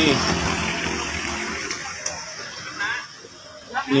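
Road traffic: the rush of tyres and engine from a vehicle passing on the road, fading away over about three seconds.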